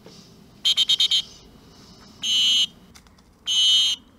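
Dog-training whistle blown: a quick run of about five short pips, then two longer blasts about a second apart.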